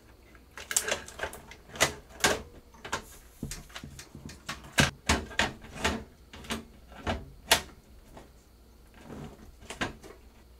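A motherboard being set down into a PC case and pushed into place against the rear I/O opening: irregular sharp clicks and knocks of the board and hardware against the case, most of them in the first seven seconds or so, quieter near the end.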